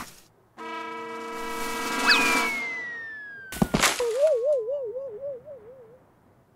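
Cartoon sound effects: a held musical chord, then a long falling whistle ending in a thud about two-thirds of the way through as the character falls. A wavering, warbling tone follows, going up and down about four times a second.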